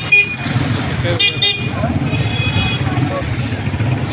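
Street traffic: vehicle engines running steadily, with short horn toots, one just as it starts and a couple more about a second in.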